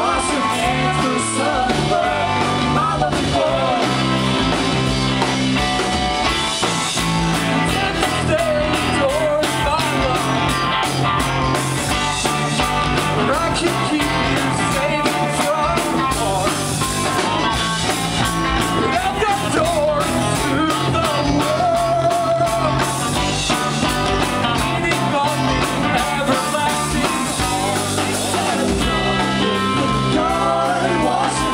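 Live indie rock band playing: electric guitars, bass guitar and drum kit under a male lead vocal.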